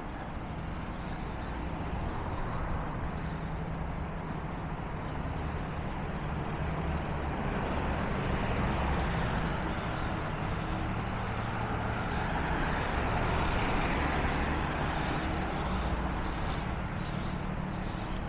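Cars driving past on a residential street, their tyre and engine noise over a steady low traffic rumble, swelling up about halfway through and again a few seconds later.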